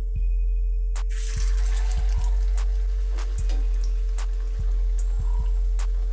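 Background music over cassava vade deep-frying in hot oil: a sizzle that starts about a second in as the vade go into the pan and then carries on.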